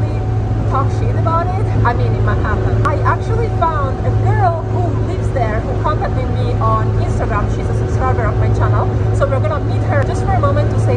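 A woman talking over the steady low drone of a ferry's engines, heard inside the passenger cabin.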